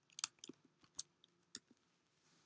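A few faint, irregular clicks of keys being pressed on a computer keyboard, two pairs close together near the start and single ones after.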